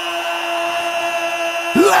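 One long note held at a steady, unwavering pitch, stopping shortly before the end.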